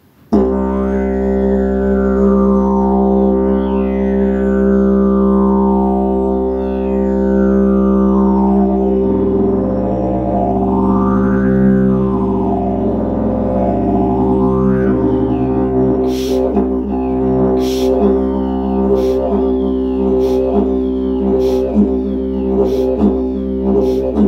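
A 143 cm bloodwood didgeridoo in the key of C playing a continuous drone, its overtones sweeping slowly up and down. From about two-thirds of the way through, sharp rhythmic accents punctuate the drone.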